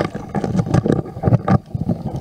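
Rough, churning seawater heard through an underwater camera housing: a muffled low rumble broken by a quick, irregular run of knocks and clicks.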